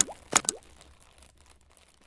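Two quick pop sound effects about half a second apart, each a sharp click with a short rising pitch, like tapping a touch-screen button, then a faint tail that dies away.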